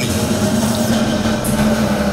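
A motor running with a steady low hum that holds one pitch.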